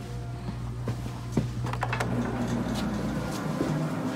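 A steady low hum with scattered footsteps and light knocks as someone walks on a path.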